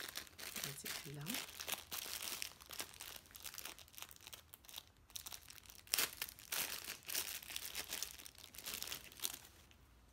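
Plastic packaging crinkling and tearing in the hands as a make-up sponge is unwrapped: a dense run of irregular crackles, the sharpest about six seconds in, dying away just before the end.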